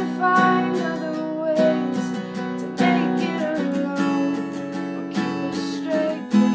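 Acoustic-electric guitar strummed in a steady rhythm, with a woman singing over it in a home cover of a pop-rock ballad.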